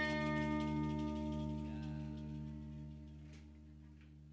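A kacapi zither's last plucked chord ringing on and slowly dying away.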